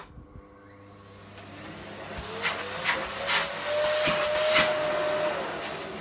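Hoover Dustmanager canister vacuum cleaner motor starting up, its whine rising in pitch over a couple of seconds and then running steadily. Several sharp rushes of air come through the middle as the hose end is blocked, a test of whether the bin-full indicator comes on. The motor tone drops away shortly before the end.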